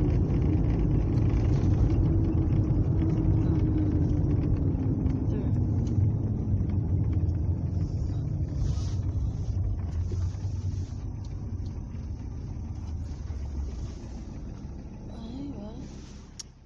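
Low, steady rumbling noise that slowly fades over the stretch and cuts off abruptly just after.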